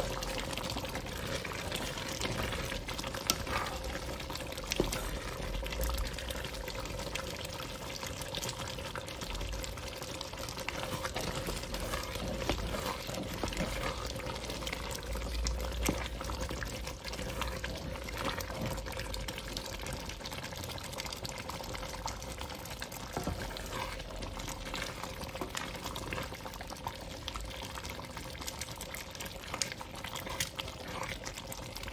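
Thick bitterleaf soup bubbling at a boil in a pot while a wooden spoon stirs it, with many small pops and wet sloshing throughout.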